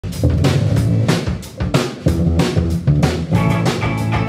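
A live rock band of drum kit, bass guitar and orange hollow-body electric guitar playing a song's instrumental intro, with steady, hard drum hits. Sustained electric guitar notes come in more clearly near the end.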